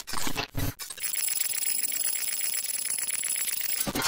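Digital glitch sound effects for an animated logo: a few short bursts, then from about a second in a fast, even crackle with a thin high whine over it, ending in a louder burst.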